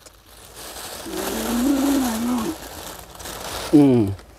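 A food packet crinkling as it is handled, with a man's low, drawn-out hum of about a second and a half in the middle and a short spoken 'ừ' near the end.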